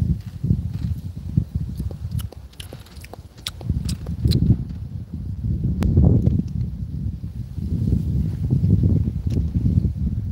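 Low, irregular rumbling buffeting on the microphone, with a few faint clicks.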